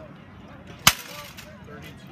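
A single sharp, loud crack of a rattan sword blow landing in armoured combat, about a second in.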